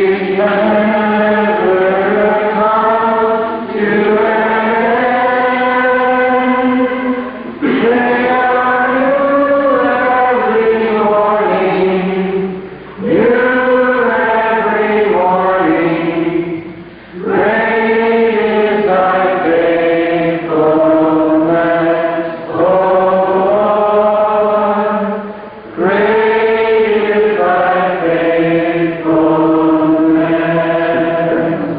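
A group of voices singing a slow song together, in long held phrases of a few seconds with brief pauses between lines.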